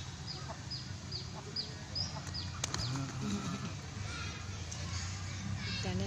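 A small bird chirping: a quick run of short, high, falling chirps, about three a second, through the first two and a half seconds, over a steady low hum. A few sharp crackles from a plastic bag being handled follow.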